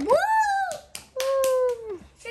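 A child's voice calling "woo", its pitch rising and then falling, followed about a second in by a held "ooh" note that slides down at the end, with a few light clicks between.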